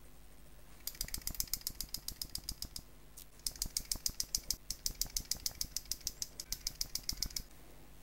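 Rotring Isograph technical pen's tube nib scratching on sketchbook paper, scribbling small circles in quick strokes about six a second. The strokes come in two runs with a short pause about three seconds in. The pen has just been refilled with red ink and is being tried out.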